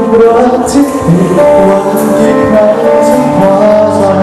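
A male singer singing a Thai pop song live into a handheld microphone over loud instrumental accompaniment with cymbal strokes, heard through a hall's PA system.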